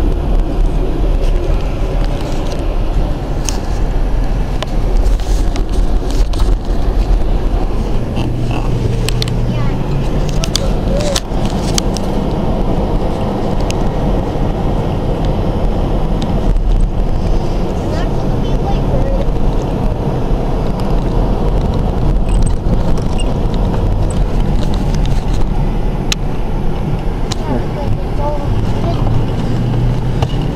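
Steady road and engine rumble heard inside a moving car's cabin, with occasional light clicks.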